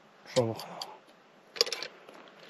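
A quick cluster of light metallic clinks near the end, as small metal coins and ornaments are picked up and handled on the dirt.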